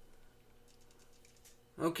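Quiet room tone with a few faint light clicks, then a man's voice begins near the end.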